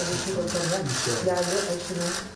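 Several people talking at once in a room, their voices overlapping over a dense, noisy background.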